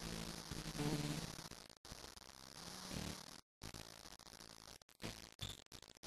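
Live electric blues band with Stratocaster electric guitar and drums, heard faint and choppy, the sound cutting out completely several times.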